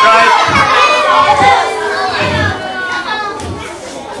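A tent audience of children chattering and calling out all at once, with several dull low thumps among the voices.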